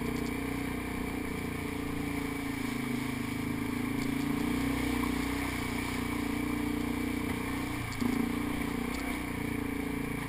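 ATV engine running steadily as the quad is ridden along a rocky creek bed. About eight seconds in, the engine note dips briefly, then picks up again a little louder.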